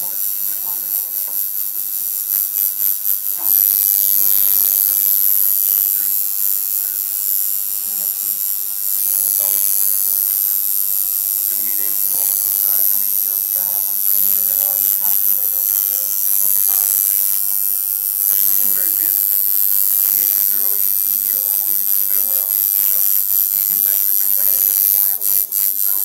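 Electric tattoo machine buzzing steadily as the needle works into skin, a little louder from about three and a half seconds in.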